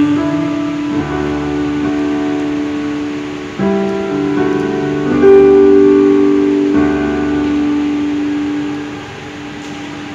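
Electronic keyboard played in slow held chords, a new chord struck every second or two and each one fading slowly; near the end the last chord dies away as the hands come off the keys.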